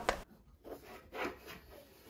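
Faint rubbing and handling of a plastic air purifier base, in a few short soft scrapes as fingers work the centre tab of the filter cover.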